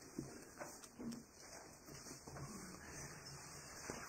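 Quiet room with faint rustling and a few soft knocks about half a second and a second in, from a hymnal's pages being leafed through to find the hymn.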